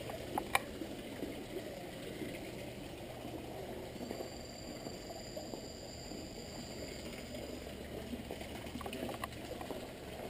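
Water running and gurgling in a rock-pool water feature, a steady wash of sound. A thin, high steady tone joins for about four seconds in the middle.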